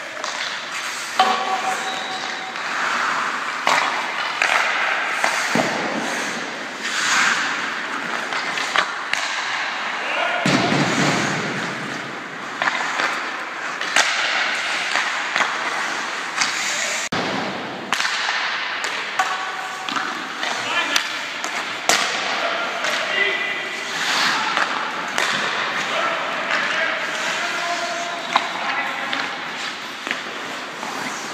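Ice hockey practice in an indoor rink: skates scraping and carving on the ice, with sharp cracks of sticks striking pucks and pucks thudding off the boards and nets at irregular moments. Players' voices call out here and there.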